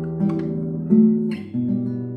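Nylon-string classical guitar played fingerstyle, with plucked notes and chords left to ring into one another. A fresh chord is struck about three times in the two seconds.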